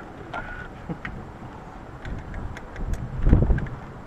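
Wind buffeting the microphone in uneven rumbling gusts, the strongest about three seconds in, with a few faint clicks.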